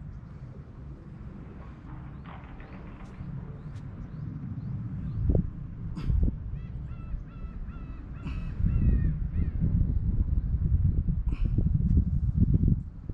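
Wind buffeting the microphone as a low rumble, growing stronger in the second half. A bird calls in a quick run of repeated harsh notes about six seconds in.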